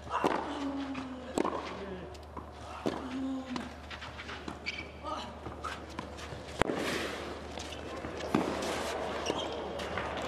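Tennis rally on a clay court: racket strikes on the ball roughly every one and a half to two seconds, with short grunts from a player on some of the shots.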